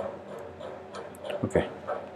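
A few soft keystrokes on a computer keyboard as a number is retyped, with a brief voice-like sound about one and a half seconds in.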